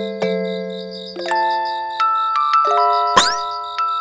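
Background music of struck, ringing bell-like mallet tones, like a glockenspiel, playing a slow melody. About three seconds in, a brief rising swoop cuts across it, the loudest moment.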